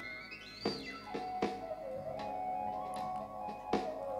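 Electronic music generated from a tracked hand's movements: synthesized tones that climb in steps during the first second, slide back down, then settle into steady held notes, with scattered sharp clicks.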